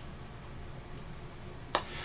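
Quiet room tone, with one short, sharp click near the end.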